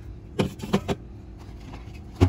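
Aluminium soda cans being set down on a fridge shelf, clinking against each other and the shelf in a quick cluster of three or four knocks about half a second in.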